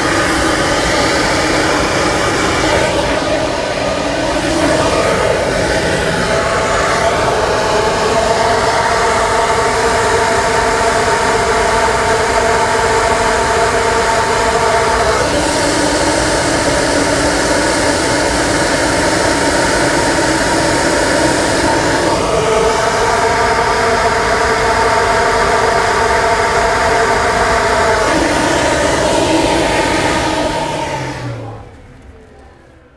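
SuperFlow flow bench running, drawing air through a corrugated flexible hose: a loud, steady rush of air with a hum of several tones that shifts pitch a few times as the hose and filter setup changes. The louder this flow noise, the more restrictive the setup; quieter means better flow.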